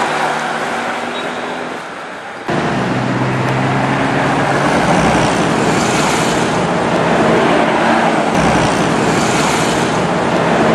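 Road traffic on a busy highway: steady roadway noise with the engine hum of passing cars and trucks. It gets louder from about two and a half seconds in.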